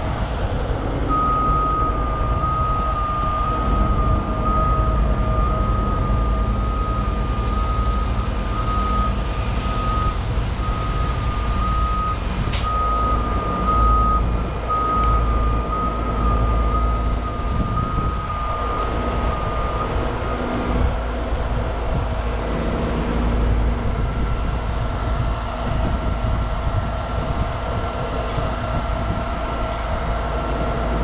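Heavy rotator tow truck's diesel engine running steadily at work, with a pulsed beeping warning alarm from about a second in until about twenty seconds in.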